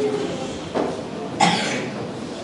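A person coughing twice in quick succession, the second cough louder.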